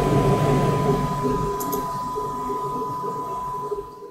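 Steady background hum with a thin, constant high whine, slowly fading. About one and a half seconds in, a quick double click of a computer mouse as the file-save dialog is navigated.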